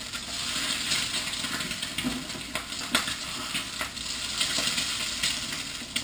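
Eggs frying with a steady sizzle in a hot pan as they are flipped, with a spatula clicking and scraping against the pan several times.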